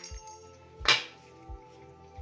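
Background music with a steady beat; about a second in, a single metallic clink of the steel firing pin coming out of an AR-15 bolt carrier group and being set down.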